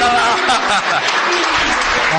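Theatre audience applauding, with a voice heard over the clapping.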